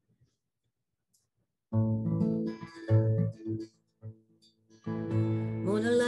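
Acoustic guitar starting to play after a short silence: a few plucked notes, a brief pause, then notes ringing on steadily near the end.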